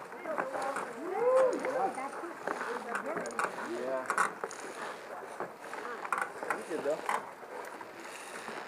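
Footsteps and knocks on the wooden planks of a cable-and-rope suspension bridge, with scattered clicks from its rigging and creaking of wood and rope. Muffled voices come through, loudest about a second in.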